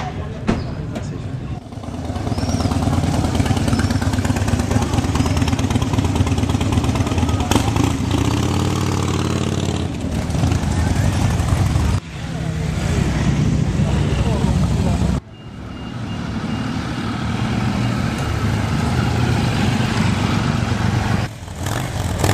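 Harley-Davidson V-twin motorcycle engines running in a low, dense rumble, with one rev rising and falling near the middle, over crowd voices. The sound breaks off abruptly twice, a little past halfway and again a few seconds later.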